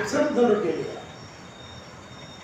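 A man speaking into a microphone, his voice stopping under a second in; a pause follows with faint hiss and a thin, steady high-pitched whine.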